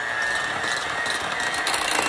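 Electric hand mixer running steadily, its beaters whirring through eggs and creamed butter in a stainless steel bowl, with a steady high motor whine. It is beating the eggs into the butter-and-sweetener mixture for a cake batter.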